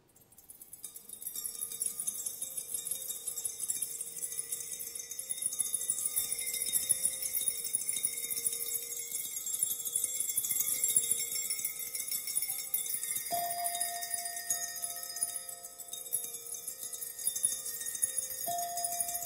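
Water-tuned brandy glasses tapped rapidly with small mallets: a dense, shimmering high tinkle over several held ringing tones. A new glass note is struck sharply about thirteen seconds in and rings on.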